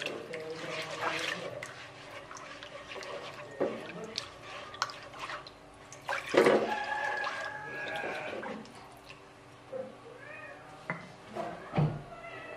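Water poured from a stream into a nonstick wok over ground spice paste, splashing and sloshing as a spatula stirs and scrapes through it.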